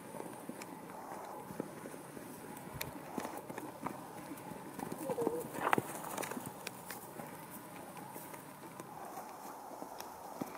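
Hoofbeats of a horse being led at a walk over frozen ground strewn with hay and thin snow: irregular soft clops and crunches. A brief voice-like sound comes about five seconds in.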